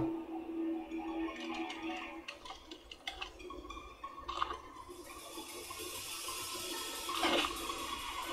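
Quiet soundtrack of an animated episode: soft background music with a few scattered sound effects, and a hiss that comes in about halfway through.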